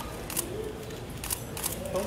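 Several camera shutters clicking at irregular intervals over a low murmur of voices.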